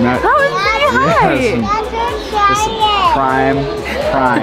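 Children's high-pitched excited voices, with sweeping squeals and calls, over background music with a steady bass.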